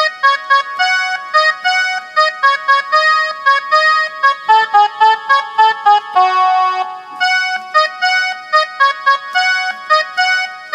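Casio Tone Bank mini keyboard playing a single-note melody, one finger at a time, at about three to four notes a second, with a few longer held notes a little past the middle. It is the opening instrumental phrase of a Chhattisgarhi song.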